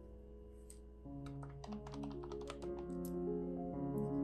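A quick run of about ten clicks from a desktop calculator's keys being pressed, starting about a second in and lasting about two seconds. Soft solo piano music plays underneath.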